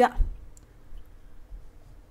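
A short, soft low thump just after the start, then a couple of faint clicks, over a faint steady hum.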